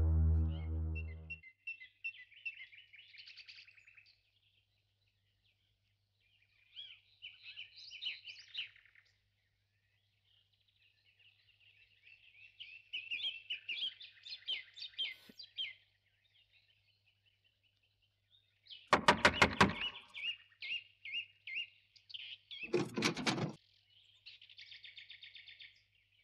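Birds chirping in scattered bursts of short high calls over a faint steady hum, after music fades out in the first second or so. Near the end come two loud bursts of rapid knocking on a door, about three seconds apart.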